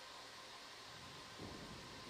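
Faint steady hiss of background noise with no distinct sound event: room tone and line noise.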